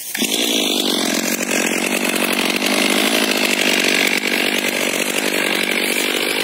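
STIHL MS 500i fuel-injected two-stroke chainsaw running steadily at high revs, not yet in the cut. It comes in suddenly at the start and holds an even pitch throughout.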